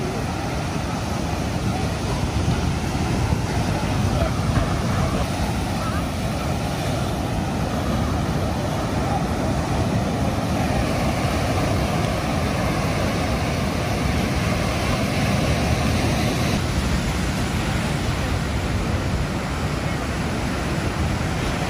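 Ocean surf breaking on a sandy beach, mixed with wind buffeting the microphone, a steady noise heaviest in the low end. Its character shifts slightly near the end.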